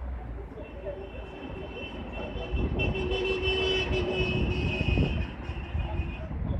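Outdoor street noise with a steady low rumble, and over it a continuous high-pitched ringing tone that sets in about half a second in and is strongest in the middle, with a held lower tone beneath it.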